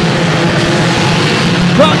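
Many banger-racing saloon car engines running together in a dense, steady drone as the whole pack takes the green flag at a race start.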